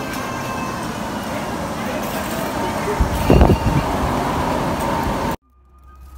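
Shopping cart rolling out through a store's doorway amid traffic noise and indistinct voices, with a few heavy low bumps about three seconds in; the sound cuts off abruptly near the end.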